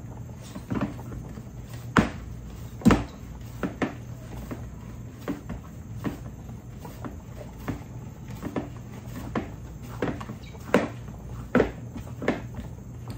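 Moist dumpling dough being kneaded by hand in a plastic mixing bowl: irregular dull thumps and knocks, about one or two a second, the loudest about two and three seconds in, over a steady low hum.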